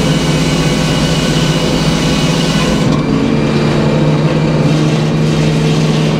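Engine-driven circular sawmill blade cutting black locust, with the engine running steadily underneath. The cutting noise stops about three seconds in, leaving the engine and the freewheeling blade running.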